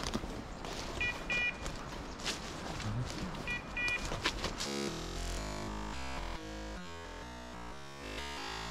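Footsteps crunching through forest undergrowth, with a pair of short electronic beeps every two to three seconds from a hunting dog's beeper collar. Music takes over a little past halfway.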